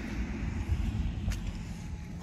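Low, uneven outdoor rumble of street background noise picked up by a handheld phone, with one faint click part-way through.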